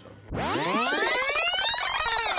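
Synthesized sweep sound effect. About a quarter second in, many tones glide upward together, peak around the middle, and start falling back down near the end.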